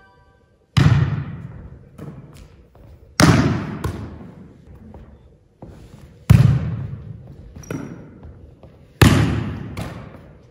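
A volleyball being struck and bouncing during a passing and spiking drill: a loud hit about every three seconds with lighter contacts between, each echoing in a large gymnasium.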